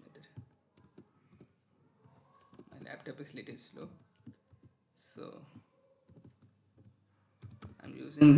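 Faint typing on a computer keyboard: scattered key clicks as an expression is typed in.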